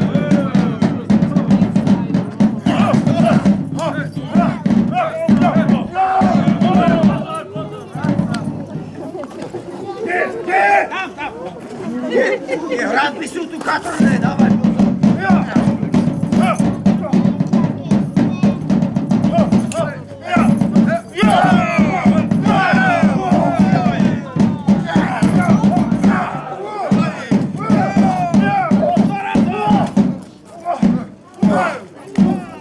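A drum played in fast, continuous rolls, with shouting voices and crowd noise over it. The drumming stops for about six seconds a quarter of the way in, then resumes.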